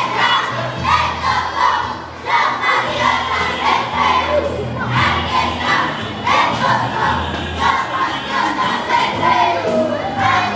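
A group of children's voices shouting together in unison, in a steady repeated rhythm like a marching chant.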